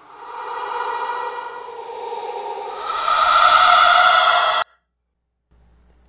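Hen clucking stretched tenfold with Audacity's Paulstretch effect, played back as a long wash of smeared, held tones. It fades in, grows louder about three seconds in, and cuts off abruptly after about four and a half seconds.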